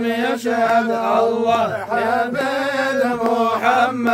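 Men chanting a devotional Islamic chant (dhikr of 'Allah') in unison, one continuous melodic line with long, drawn-out notes.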